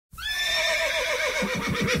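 A horse whinnying: one long neigh that starts high and then falls away in a quavering series of pulses.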